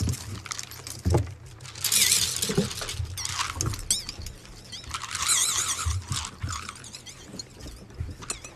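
High-pitched wavering squeals, once about two seconds in and again for about a second around the five-second mark, among short knocks and clicks.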